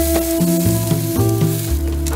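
A thick tomahawk steak sizzling on a hot charcoal grill grate, a fine steady hiss, under background music.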